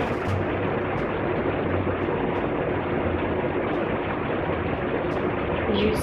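Electric fan running with a steady whooshing drone and a low hum.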